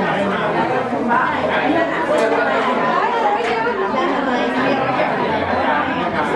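Many people talking at once in a large hall: steady, overlapping conversations with no single voice standing out.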